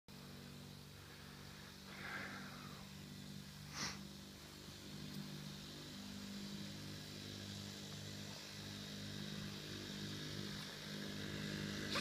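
Small Suzuki JR50 minibike's single-cylinder two-stroke engine running steadily at low speed, faint and growing slightly louder toward the end as it comes closer. A brief sharp click about four seconds in.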